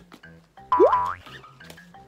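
A cartoon-style 'boing' sound effect, one quick upward-sliding pitch about a second in, over soft background music.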